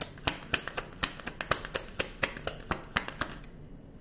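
Tarot deck being shuffled by hand: a quick, even run of sharp card clicks, about five a second, that stops about three and a half seconds in.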